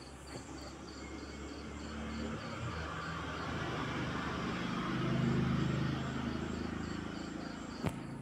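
Faint background of insects chirping in a steady, even pulse, with a low engine hum that swells to its loudest about five seconds in and then fades as a vehicle passes.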